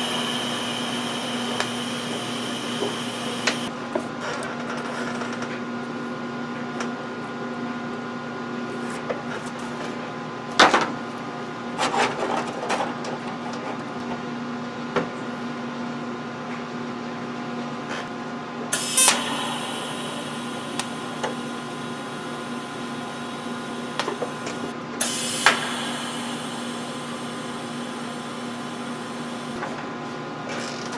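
Wire-feed welder tack-welding steel flat bar: the arc crackles and hisses for the first few seconds, then two more short tack welds crackle near the 19- and 25-second marks. Metal pieces clank on the steel bench in between, over a steady hum.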